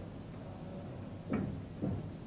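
Krones bottle labeller's gripper mechanism being inched slowly, with a steady low hum and two dull mechanical knocks about half a second apart, past the middle.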